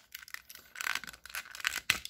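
Plastic scraping and clicking as the body shell of a Tomy toy engine is worked off its battery motor chassis by hand, with a sharp click near the end.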